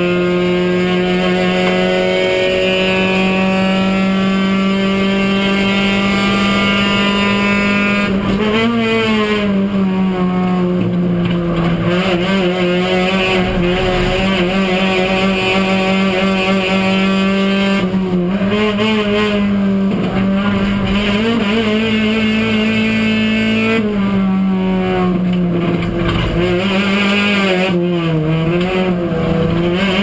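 Kia one-make race car's engine heard from inside the cockpit, running hard at mostly steady revs. Its pitch rises and dips with gear changes and lifts for corners about eight seconds in, around eighteen seconds, and several times near the end.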